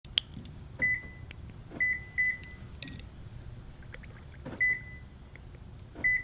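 Short high electronic beeps from a parked car answering button presses on its key fob, which is held under water in a glass: one beep, a quick double beep, then another single beep, each starting with a click.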